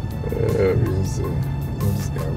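Background film music with a steady ticking beat, and a man's short, low laugh early on.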